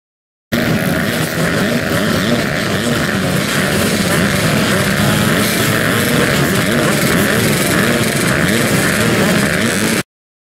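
A gate full of motocross bikes running at the start line, many engines at once, their pitch wavering up and down as riders blip the throttles. The sound cuts in suddenly about half a second in.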